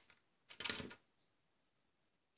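A brief, light clatter of a small plastic doll toppling off its toy chair onto the floor, about half a second in, with a faint click at the start; otherwise near silence.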